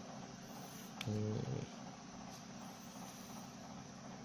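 Faint steady background hiss, with a short low hum from a man's voice, about half a second long, starting about a second in just after a small click.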